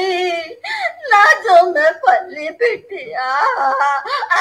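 A woman's voice wailing loudly in acted crying: a string of drawn-out, sliding cries with short breaks, mimicking an old woman bursting into tears.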